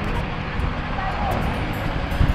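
A pickup truck driving up the road toward the camera, its engine and tyres heard as a steady rumble mixed with wind noise on the microphone.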